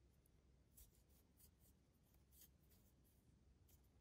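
Near silence, with a few faint, scattered soft ticks and rustles of a crochet hook working yarn into stitches.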